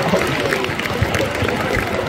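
Indistinct murmur of voices in a large gym hall, with several low thumps from about a second in.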